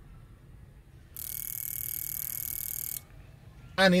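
Cleaned port fuel injector from a Honda Accord V6 clicking rapidly and steadily, like a fast buzz, as a pulse tester fires its solenoid for about two seconds, starting about a second in. It clicks quite well: the solenoid is actuating again after being stuck by gum and varnish.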